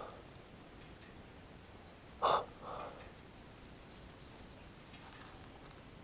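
Faint, steady chirring of crickets, with one short, louder sound about two seconds in.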